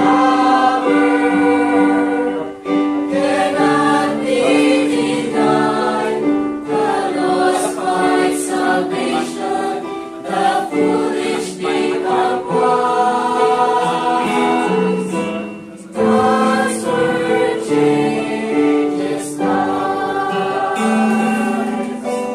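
Mixed church choir of young women and men singing a hymn, with short breaks between phrases.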